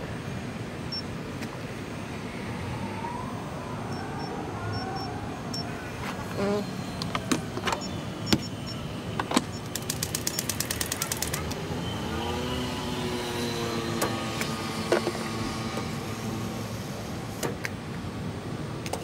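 Steady street traffic with a vehicle engine speeding up and then holding its pitch past the middle, over scattered clicks and taps, including a quick run of clicks.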